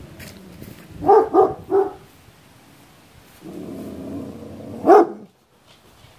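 A dog barking: three quick barks about a second in, then a longer, lower sound and one more loud bark about five seconds in.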